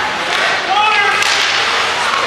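Shouting voices echoing in an indoor ice hockey rink during live play, with a sharp crack a little past a second in.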